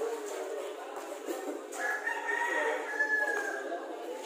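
A rooster crowing once near the middle: one long call of about a second and a half that falls slightly at the end.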